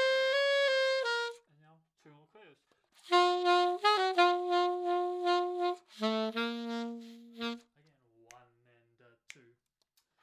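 Alto saxophone playing short phrases of long, sustained notes from a slow 9/8 study, with pauses between phrases. A few quick notes come near the middle, and the last note is held lower. A soft voice can be heard faintly in the gaps.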